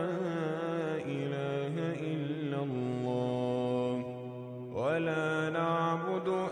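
Arabic devotional chant: a voice holding long, drawn-out notes with slow pitch glides. It drops briefly about four seconds in, then comes back with an upward slide.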